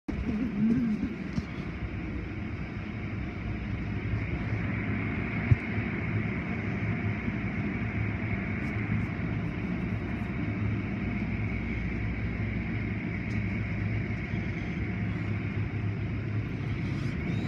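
Automatic car wash running over a car, heard from inside it: a steady rumbling wash of water spray and hanging cloth strips rubbing across the body and glass, over a low hum. A single sharp knock about five and a half seconds in.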